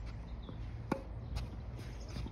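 A tennis ball struck with a racket: one sharp pop about a second in, with a few faint ticks of footsteps on the court around it.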